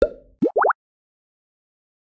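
Editing sound effect for a title card: a sudden soft hit, then about half a second later a quick run of three short bloops, each rising in pitch.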